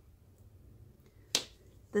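Quiet room tone broken once, about a second and a half in, by a single sharp tap.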